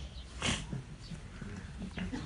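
A brief pause in a man's speech through a microphone: one short breath about half a second in, then faint background.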